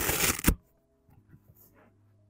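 A car floor mat being dragged out of the footwell: a brief rustling scrape that ends in a sharp knock about half a second in, followed by a few faint taps.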